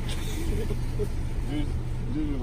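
A steady low rumble of vehicles in a parking lot, with a few short snatches of voice over it.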